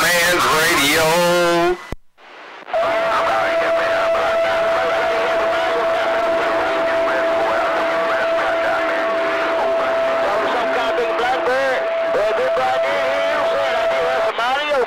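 CB radio receiving on channel 26: a man's sing-song voice comes over the air and cuts off about two seconds in. After a short gap, the channel fills with a steady whistle over garbled, overlapping voices.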